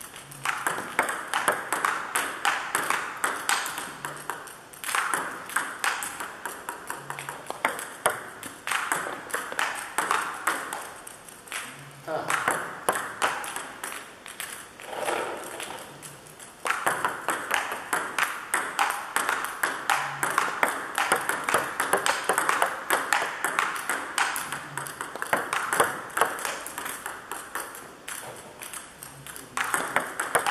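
Table tennis ball hit back and forth, quick sharp clicks of the ball on the paddles and bouncing on the table, in rallies broken by short pauses.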